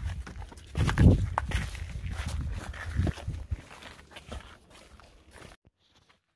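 Footsteps on a rocky, gravelly hiking trail, a scatter of short crunches and knocks with some low rumble, growing fainter and dying away near the end.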